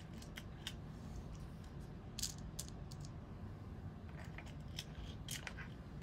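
Faint handling noise: scattered light clicks and rustling of small items and clothing close to the microphone.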